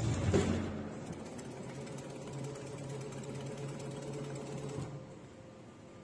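Servo-driven hydraulic pump of a Chuan Lih Fa CLF-950TX injection molding machine running under load with a fast mechanical buzz. It starts with a loud surge, a low hum joins about two seconds in, and it cuts off suddenly about five seconds in, as one machine movement ends.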